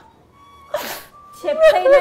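A woman crying: one short, noisy sob just under a second in, over faint music holding a thin steady tone. A woman's voice starts speaking near the end.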